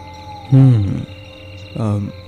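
A man's short wordless vocalisation, falling in pitch, followed near the end by the start of another utterance, over a faint ambience bed with thin steady tones.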